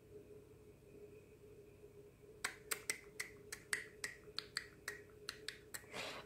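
A quick, irregular run of about twenty small sharp clicks, roughly six a second, starting a little over two seconds in, over a faint steady hum.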